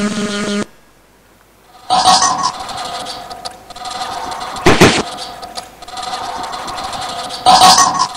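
Soundtrack of a hand-drawn animation played over a hall's speakers. Steady tones cut off suddenly about half a second in, and after a second of near silence a steady buzzing drone begins. Louder bursts rise out of it about two seconds in, near the middle, and near the end.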